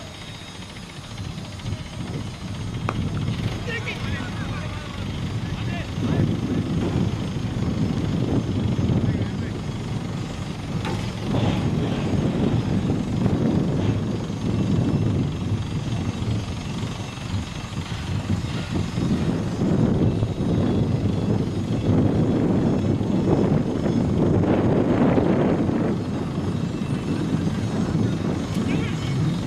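Wind rumbling on the microphone at an outdoor cricket ground, with players' voices calling out, and a single sharp knock about eleven seconds in.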